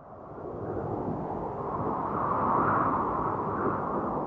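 Sound effect of a cold wind blowing, a low rushing noise that fades in and swells towards the middle. It is the stock gag for a joke falling flat: an awkward, chilly silence.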